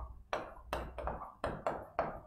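Marker pen writing on a whiteboard: a quick run of short tapping strokes, about five a second, as letters are written.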